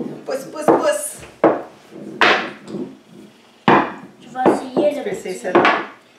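Wooden rolling pins knocking and rolling on a wooden tabletop as dough is rolled out: a string of irregular wooden knocks, about eight in six seconds.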